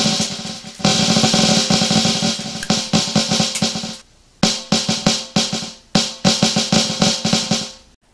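A fast, dense roll of electronic snare-drum hits, set off by a stream of Airsoft BBs pouring onto a mesh-head snare drum fitted with an internal drum trigger. Each small BB impact registers as a snare note, which shows how sensitive the trigger is. The roll breaks off about four seconds in, then comes back as a sparser run of separate hits that thin out toward the end.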